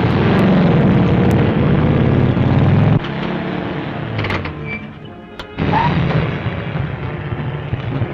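Motor vehicle engines running under film score music, with a sudden loud burst a little past halfway.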